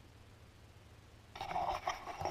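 Near silence, then a bit over a second in, rustling and scraping of a handheld camera being picked up and moved.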